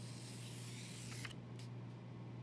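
Graphite pencil scratching across dry painted paper as a long line is drawn, easing off after about a second and a half. A steady low hum runs underneath.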